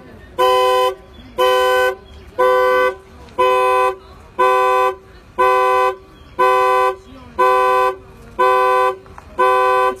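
A 2005 Infiniti G35's car alarm blaring its two-note horn in steady blasts, about one a second, ten in all. The alarm system is faulty and won't stop sounding.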